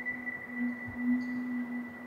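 Quiet drama background score: a low held synth note, swelling slightly now and then, with a faint high steady tone above it.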